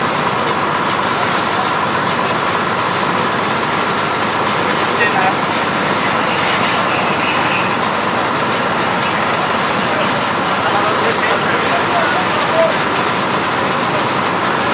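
Steady, loud mechanical running of fire apparatus pumping water to the hose lines, with a faint steady whine over it and a few faint distant voices.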